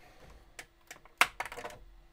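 A few light plastic clicks and taps as a 3D-printed ASA temperature tower is handled and tipped over on a textured printer build plate, the sharpest about a second in.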